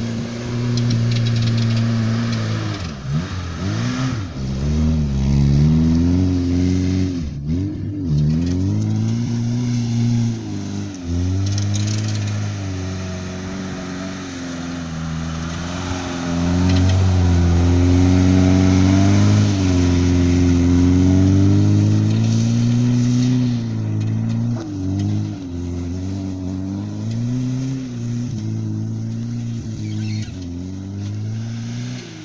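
VAZ 2101 Zhiguli with a swapped-in 1.7-litre Niva four-cylinder engine, revved hard while the car drifts on grass. The engine note drops and climbs again and again. Through the middle it holds high revs in a long, loudest stretch before falling and rising a few more times near the end.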